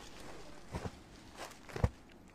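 Hands handling and unfolding a folded cloth suit on a floor: soft cloth rustle with a few light taps, and one sharper thump near the end.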